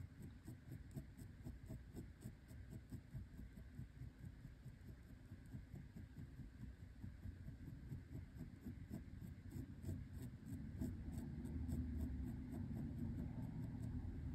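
Ballpoint pen hatching on textured watercolour paper: faint, quick scratchy strokes, about four a second, as layers of ink are built up to darken the corner of a drawn eye. A low rumble grows louder over the last few seconds.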